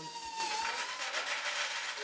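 Workshop sounds: a small electric motor's steady high whine that sags and stops about a second in, followed by a rattling hiss of small candies poured from a bin into a metal hopper.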